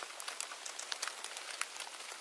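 A steady hiss with a dense, irregular patter of small clicks and crackles, like rain. No music or tones yet.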